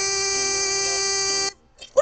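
Pop song recording: one long held note with bright overtones that cuts off suddenly about three-quarters of the way through, leaving a brief near-silent break. A short bending vocal sound starts right at the end.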